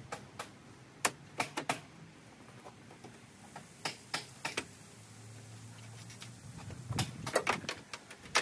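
Sharp plastic clicks and taps, in scattered clusters of two to four, as a screwdriver pries at the plastic push clips holding a Honda CR-V's upper grille cover.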